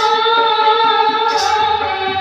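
Girls singing a slow song with long held notes, the lead voice sung into a microphone, over a short high stroke that repeats about every one and a half seconds.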